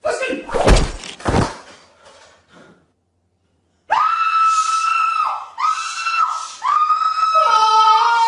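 A tall padded folding gym mat toppling over onto a person, two heavy thuds in the first second and a half. After a short silence come long, high-pitched held shrieks, several in a row.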